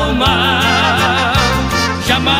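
Recorded Brazilian gospel hymn music: a melody line with wide vibrato over a steady bass and rhythm accompaniment.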